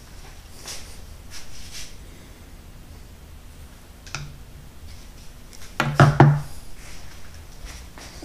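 Hand tool clattering against metal in a car's engine bay: a single sharp click about four seconds in, then a quick cluster of louder knocks and clatter about six seconds in, over a faint low hum.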